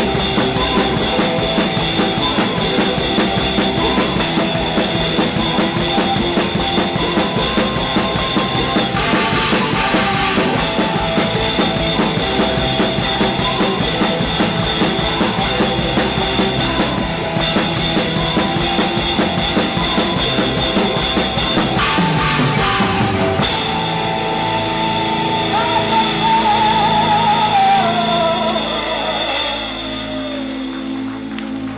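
A rock band playing live, with a full drum kit of kick drum, snare and cymbals driving the song. About three-quarters of the way through, the drums drop out and sustained tones ring on, with a wavering high note near the end as the song winds down.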